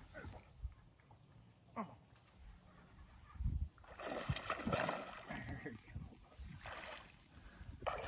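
Water splashing as a hooked bass thrashes at the surface, in a noisy stretch starting about four seconds in, with a low thump just before it.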